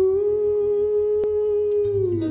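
A man humming one long wordless note into a microphone, rising slightly in pitch just after the start and sliding down near the end, over a low steady keyboard drone. A single click sounds about midway.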